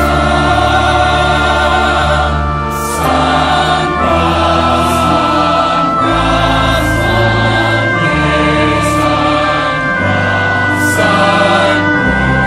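Large mixed choir singing a gospel song in harmony, holding long chords that change every second or two, with the singers' 's' sounds landing together in short hisses.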